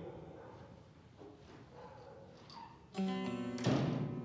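Quiet room tone, then about three seconds in a plucked string instrument of the film score sounds a ringing note, with a second, louder stroke just after.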